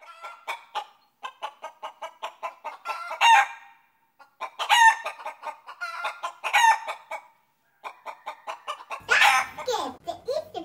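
A hen clucking in quick runs of short clucks, broken by three louder rising squawks. It sounds thin, with no low end. Near the end, a fuller, louder sound cuts in.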